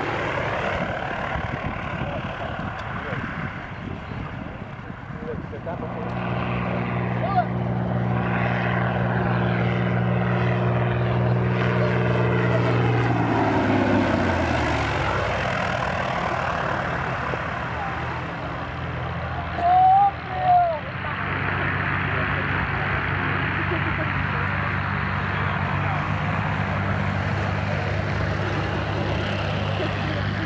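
Single-engine light propeller aircraft on low passes. A piston engine and propeller drone builds as a plane approaches, then drops in pitch as it passes about halfway through, before another engine drone builds up. Two short, loud sounds come just after two-thirds of the way in.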